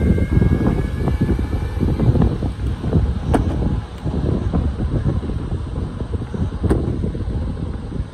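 Wind buffeting a moving phone's microphone: a rough, gusty rumble that rises and falls, with a faint high whine near the start and a couple of sharp clicks.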